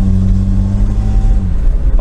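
Swapped-in Toyota 5VZ-FE 3.4-litre V6 engine of a GAZ-69 pulling at low speed, heard inside the cabin: a steady low exhaust drone with a little bass through a Land Cruiser muffler, rather loud. About one and a half seconds in, the steady note breaks up as the engine speed changes.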